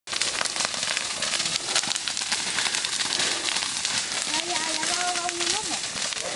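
Burning brush and dry vegetation crackling and popping densely in a wildfire. A person's voice calls out briefly, held on one pitch, from a little after four seconds in.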